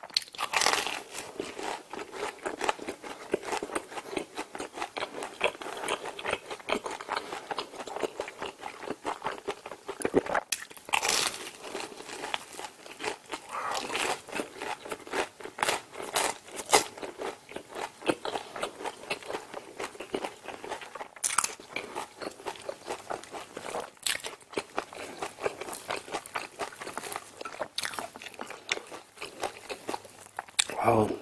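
Close-miked biting and chewing of a crispy cheese corn dog. The fried, sugar-coated batter crunches and crackles steadily, with several louder crunching bites along the way.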